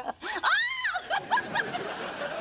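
A burst of laughter about half a second in, one voice rising and falling in pitch, trailing off into smaller voice sounds.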